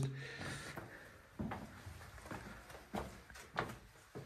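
A few separate hollow knocks of footsteps on wooden stairs while climbing, spaced irregularly about a second apart.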